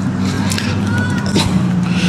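A steady low motor hum runs throughout. Faint distant people screaming can be heard in the background.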